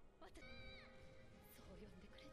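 Faint anime episode audio: soft background music with held notes, and a brief high, held, voice-like cry about half a second in that dips at its end.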